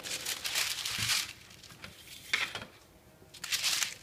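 A sheet of tracing paper rustling and crinkling as it is handled and laid flat over a drawing, in three brief bursts with quieter gaps between.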